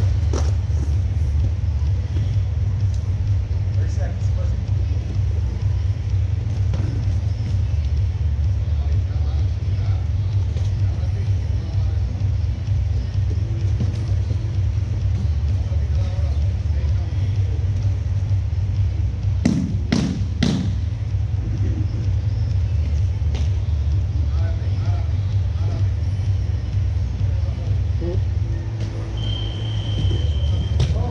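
Steady low rumble of room noise in a large gym. A quick cluster of three or four sharp impacts comes about two-thirds of the way in, and a short high beep sounds near the end.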